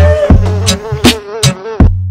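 A comic mosquito buzz, a wavering whine that stops near the end, over background music with a bass line and regular drum hits.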